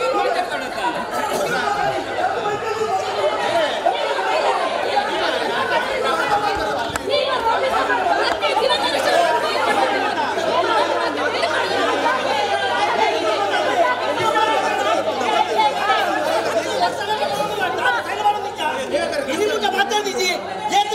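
Many people talking over one another at once, a continuous chatter of overlapping voices in a large, echoing hall, with a steady low hum underneath.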